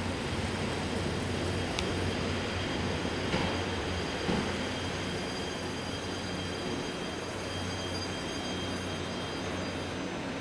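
Diesel railcar idling at a station platform: a steady low hum, with a faint high whine through the middle.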